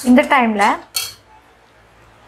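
Slotted metal spatula scraping and stirring thick milk fudge in a stainless steel kadai, in a few short strokes, the last about a second in. A woman's voice sounds briefly in the first second and is the loudest thing.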